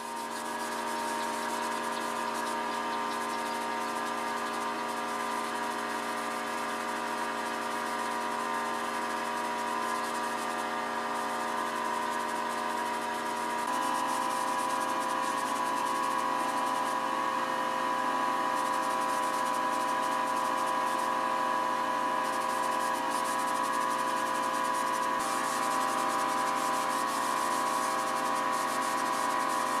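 Hose-fed compressed-air paint spray gun hissing steadily as it sprays paint, over a steady machine hum; the hum changes pitch about halfway through.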